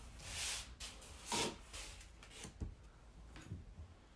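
Paper and cut cardstock pieces rustling and sliding under the hands on a desk: two short swishes in the first second and a half, then a few soft taps.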